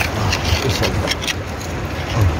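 A stick prying and scraping at a stone stuck fast in a shallow streambed: a run of quick knocks and scrapes of wood on rock over a low rumble.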